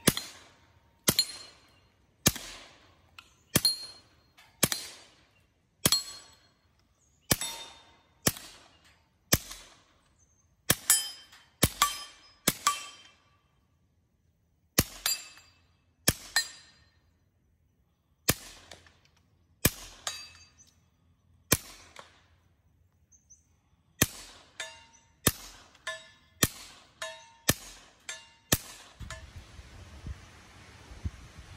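Suppressed KelTec CP-33 .22 LR pistol fired one shot at a time, about one a second with a few short pauses. Each shot is followed by the ring of a steel target being hit.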